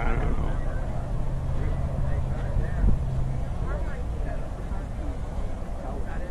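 Faint background voices with a vehicle engine running, its low hum holding steady for about three seconds and then fading out around halfway through.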